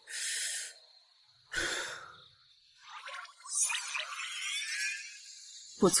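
Chinese bamboo flute played with a breathy tone: two short puffs of air, then from about halfway a wavering, airy melody with sliding pitch.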